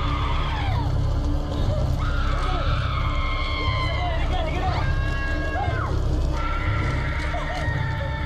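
Film soundtrack of people screaming and wailing in long, high, wavering cries, several overlapping in the middle, over a steady low rumble and music.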